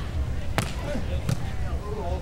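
A volleyball struck hard by hand twice, sharp smacks about half a second and a second and a quarter in, over a steady low rumble of wind on the microphone.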